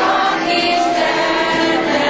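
A group of mostly women's voices singing a song together, holding long notes.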